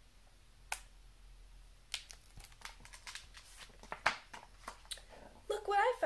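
Pages of a picture book being handled and turned: a sharp click about a second in, then a run of soft paper rustles and taps.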